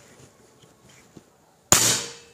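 Reximex Throne Gen2 .22 PCP air rifle firing a single shot about 1.7 s in: a sharp, sudden report that dies away quickly, very quiet for an air rifle because of the baffles built into its barrel shroud. A faint click comes shortly before.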